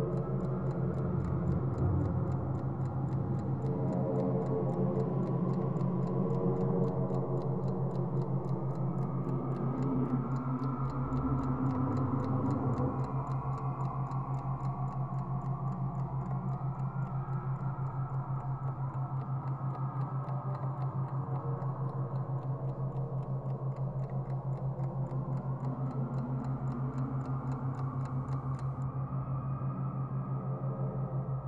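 Electronic brainwave-entrainment track: a strong, steady low drone pulsing rapidly, marketed as a 6 Hz beat, under slow gliding synth tones. A clock ticks steadily over it and stops near the end.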